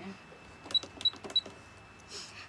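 Three short, high-pitched electronic beeps, each with a click, about a third of a second apart, like keypresses on a small electronic device.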